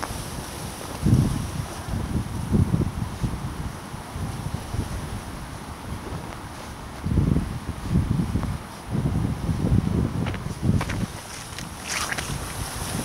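Wind gusting across the microphone: low rumbling buffets that swell about a second in and again for several seconds from about seven seconds in.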